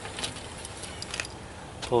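Faint small metallic clicks and scrapes of steel side cutters gripping a molly bolt's screw head and washer as it is worked out of the sheetrock, a handful of ticks in the first second or so.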